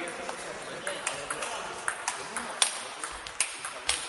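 Table tennis ball in a fast rally: about eight sharp clicks as it is hit by the rackets and bounces on the table, roughly every half second, the loudest about two and a half seconds in.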